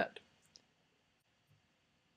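Two faint clicks of a computer mouse in the first half second, as the pin component is moved in a 3D modelling program.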